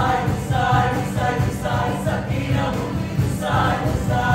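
Several voices singing together in chorus over accompanying music with a regular low beat.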